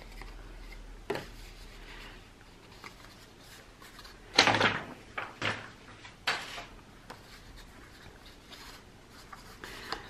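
Stiff cardstock handled and slid against paper: a few short rustling scrapes, the loudest about four and a half seconds in, after a faint tap about a second in.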